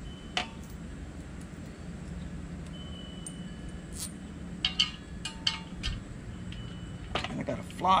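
Small steel bolts and hardware clinking as they are handled and fitted to a steel trailer-dolly handle: a few sharp metallic clicks spread out, with a quick cluster about five seconds in, over a steady low hum.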